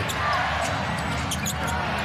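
Basketball game sound in an arena: a steady hum of crowd noise, with the ball bouncing on the hardwood court as it is dribbled.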